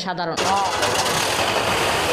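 A woman's narration breaks off just after the start and gives way abruptly to steady street noise: car engines running, with voices mixed in.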